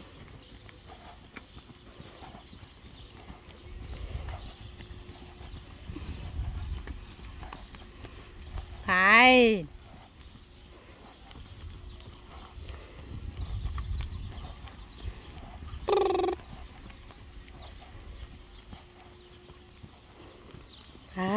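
Hoofbeats of a loose pony cantering on sand: dull thuds that swell twice as it passes close. A person's short, loud driving calls break in twice, once about halfway through and once more briefly later on.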